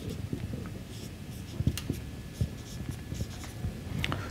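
A marker writing on a whiteboard: faint scratching strokes with a few short taps as letters are formed.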